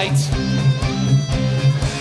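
Rock music: strummed guitar over sustained low notes and a steady drum beat of about two hits a second.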